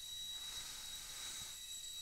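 Steady background hiss with a faint, high-pitched steady whine: microphone noise during a pause in speech.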